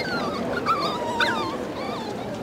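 Puppies whimpering and yipping: a series of short high calls, one sliding down in pitch about a second in.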